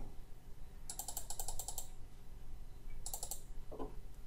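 Computer mouse scroll wheel being rolled, its notches ticking in quick even runs. There are about ten ticks about a second in and a shorter run of a few ticks about three seconds in.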